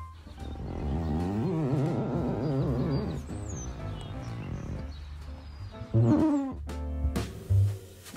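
Side of a hand squeaking as it is dragged over fogged window glass, drawing a heart in the condensation: a long squeak with a rapidly wavering pitch in the first few seconds, then a shorter squeak that falls in pitch about six seconds in.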